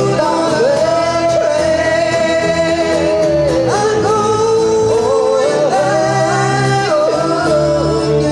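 A woman singing lead into a handheld microphone over a strummed acoustic guitar, played live by a small band. She holds long notes and slides between them.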